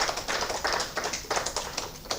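Applause from a small audience, a dense patter of hand claps.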